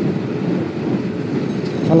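Steady rumble of wind, engine and tyres from a motorcycle riding at speed close behind a large cargo truck.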